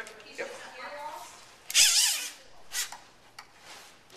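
A short, loud rasping scrape about halfway through, with a shorter one soon after: a hose sliding against the inside of a red water-fed pole as it is worked through the pole.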